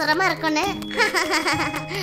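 A high-pitched cartoon character voice giggling and chattering, with light children's background music underneath.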